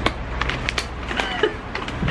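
Small cardboard gift box being opened by hand, with a few sharp crackles of cardboard and paper over a steady low background hum.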